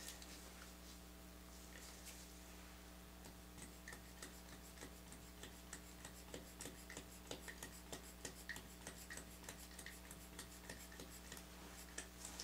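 Faint light ticks, about three a second, from a small plastic glitter bottle being squeezed and tapped over the soap top, starting a few seconds in. A steady low electrical hum sits underneath.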